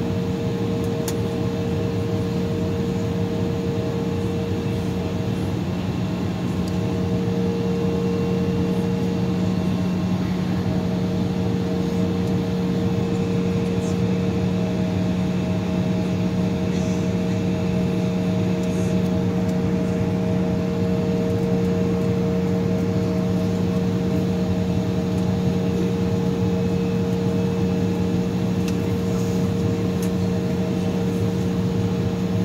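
Cabin noise of an Embraer E-175 airliner taxiing at low power, heard from a window seat over the wing: its turbofan engines and cabin air make a steady hum with a few held tones.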